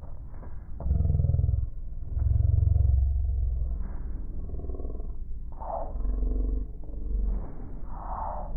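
A voice talking, muffled and low, with all the upper range cut off.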